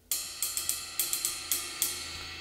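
Cymbals and drums of a kit played with the hard felt mallet ends of Promark SD7 sticks, which take the attack away from the cymbals. A quick run of about ten strokes in a 3-2 clave-based groove starts just after the opening, with the cymbals ringing on between strokes.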